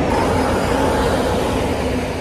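Wind buffeting the phone's microphone outdoors: a steady, loud rushing noise with a flickering low rumble.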